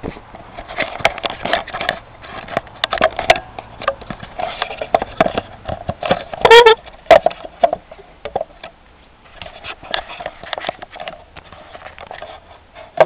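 Irregular crunching of footsteps and handling in packed snow, in clusters with short pauses. About six and a half seconds in comes one brief, loud squeaky pitched sound.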